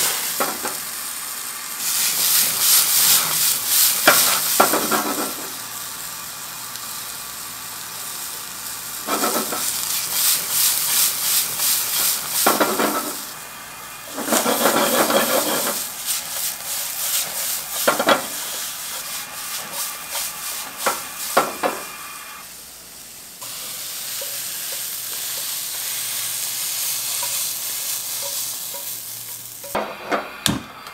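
Bean sprouts stir-frying in a wok over a high gas flame: a loud sizzle that swells and falls in surges as the wok is tossed, with sharp clanks of metal now and then. From about three quarters of the way through the sizzle gives way to a steadier hiss.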